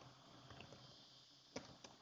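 Near silence with a few faint, sharp computer keyboard keystrokes as a word is typed, two of them clearer near the end.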